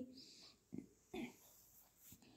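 Near silence, with two faint short low sounds, about three-quarters of a second and a second and a quarter in.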